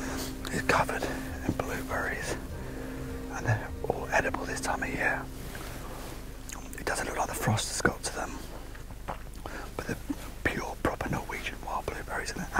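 Hushed whispering between hunters stalking, in short phrases with pauses.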